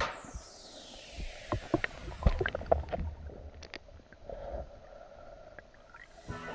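Underwater sound picked up by a submerged camera: scattered sharp clicks and knocks over a low rumble as a diver moves along a riverbed. A faint high-pitched falling sweep runs through the first few seconds.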